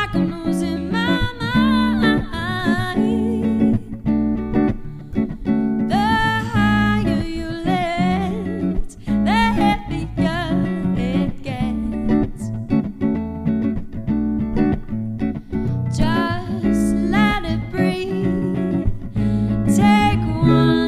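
Live band music: a woman sings lead over plucked guitars and bass. Her sung phrases come and go, with stretches of guitar and bass alone between them.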